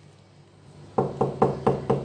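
Five quick knocks on a wooden door, about four a second, starting about a second in.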